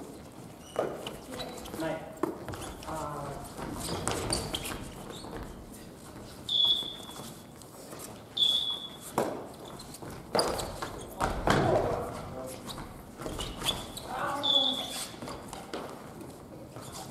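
A badminton rally on a wooden gym floor: rackets strike the shuttlecock with sharp hits, and short high sneaker squeaks come now and then. Players' voices call out in between.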